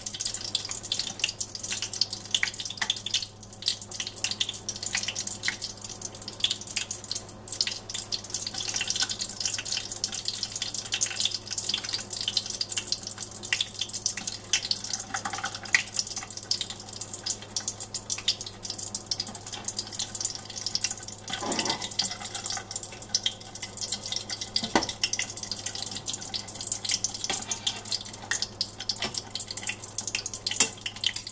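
Hot mineral oil in a saucepan sizzling with a steady, dense crackle of tiny pops around pieces of laser-sintered nylon heating in it. The popping is taken to be moisture in the nylon boiling off.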